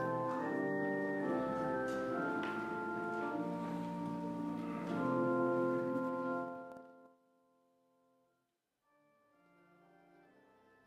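Church organ playing sustained chords for the offertory. It breaks off about seven seconds in, and after a short near-silent gap faint music starts again near the end.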